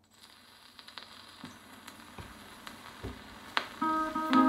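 Surface noise of a shellac 78 rpm record played through a Victor Orthophonic soundbox and exponential horn with a Burmese Colour Needle: crackle and scattered clicks as the needle runs in the lead-in groove, growing louder, with a sharper click about three and a half seconds in. The band's first held notes begin just before the end.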